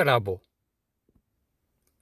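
A man's voice trailing off at the end of a word, then silence broken only by two faint clicks about a second in.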